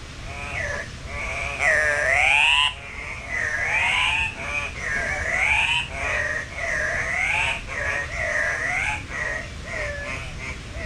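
A bird calling over and over, each call sweeping up and back down in pitch, about one a second. The loudest and longest call comes about two seconds in.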